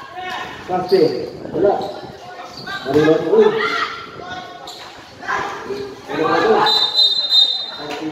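Players and onlookers calling out on a basketball court, with a basketball bouncing. Near the end a referee's whistle sounds as one steady, high blast of about a second.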